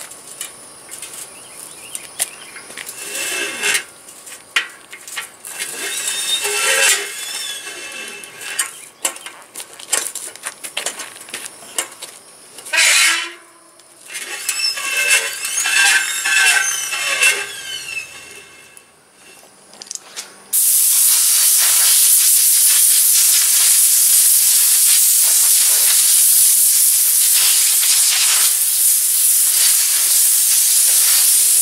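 Clicks and rattles of an upside-down bicycle being handled and its wheels and chain worked, then, about two-thirds of the way in, a loud steady hiss of compressed air from an air-hose chuck on the rear tyre's valve as the tyre is aired up.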